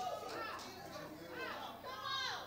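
Faint, scattered voices from the congregation, a few short murmurs and calls, quiet against the room.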